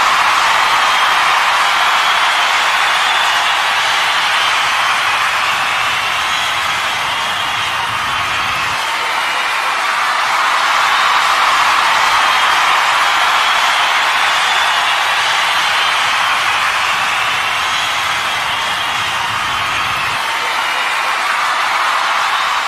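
Concert crowd cheering and whooping: a dense, steady wash of crowd noise that swells and eases, sounding thin with little bass.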